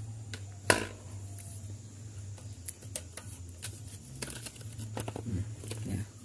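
Freshly cleaned electric stand fan running, a steady low motor hum, with one sharp click about a second in and scattered light clicks from handling the fan's metal grille.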